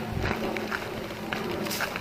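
Footsteps of a person walking through tall grass, picked up by a police body camera worn on the walker, as a series of faint, irregular steps over a steady hiss.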